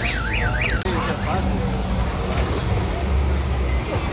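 An electronic siren-like warble, sweeping up and down about three to four times a second, that cuts off about a second in, over a steady low rumble of idling vehicles.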